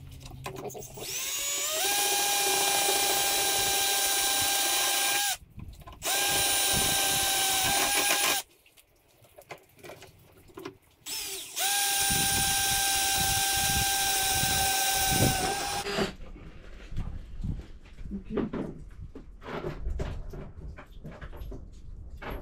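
Cordless drill boring holes through a snowmobile's chainsaw-holder mounting brackets. It spins up and runs steadily in three stretches of a few seconds each, with short pauses between them. Light clatter and knocks from handling follow for the last few seconds.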